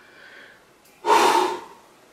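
A man's sigh: one loud, breathy exhale about a second in, lasting about half a second, after a faint breath at the start.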